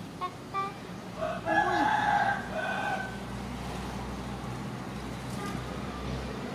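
A rooster crowing once, a long call of about a second and a half, just after a few short high calls, over a steady low hum.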